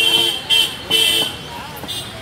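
A vehicle horn honking three times in quick succession: one honk already sounding at the start, then two shorter honks about half a second and a second in.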